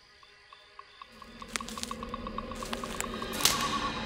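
Soft cartoon underscore fading in from near quiet: light ticking notes about four or five a second over a low held note, growing louder, with one brief swish about three and a half seconds in.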